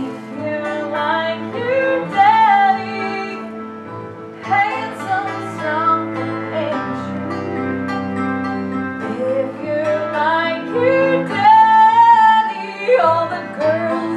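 A woman singing a solo song with a live band beneath her, the band holding sustained chords. The voice breaks off briefly about four seconds in.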